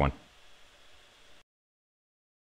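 Only speech: a man's voice ends on a last word, followed by faint room hiss that cuts off to dead silence about one and a half seconds in.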